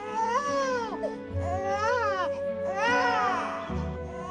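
A newborn baby crying: three wails in a row, each rising and falling in pitch, over soft background music with held notes.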